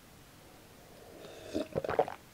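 Gulping swallows of tomato juice drunk straight from a glass pitcher, close-miked. Quiet for the first second, then a few gulps in quick succession near the end.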